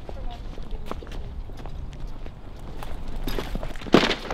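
Footsteps on paving among people talking, with a sudden loud thump near the end as two people bump into each other.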